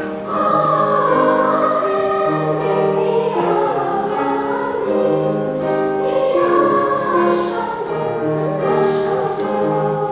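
Elementary school children's choir singing with grand piano accompaniment, the voices holding long, sustained notes.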